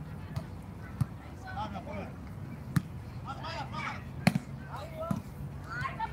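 A volleyball being struck in play, about five sharp slaps spread across a few seconds, the loudest near three and four and a half seconds in. Players' voices calling and chattering at a distance, over a steady low hum.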